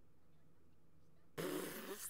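A woman's sudden burst of stifled laughter behind her hand, breathy and about a second long, starting near the end after faint room tone.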